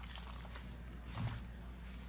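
Faint handling sounds of ground black pepper being sprinkled by hand onto raw flank steak in a stainless-steel tray: a few soft ticks over a low steady hum.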